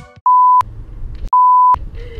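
Two loud electronic beeps, each a steady pure tone lasting about a third of a second, the second coming about a second after the first: an edit-added bleep sound effect.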